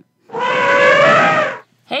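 A short squealing cry sound effect lasting just over a second, shrill and loud, between two stretches of talk.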